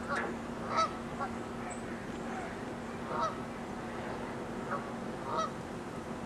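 A series of short honking animal calls, about six, at irregular intervals and the loudest about a second in, over a steady low hum.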